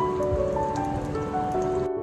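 Pork cartilage sausages (dồi sụn) sizzling in hot oil in a frying pan, a steady hiss with scattered crackling pops, under soft melodic background music. The sizzle cuts off suddenly near the end, leaving only the music.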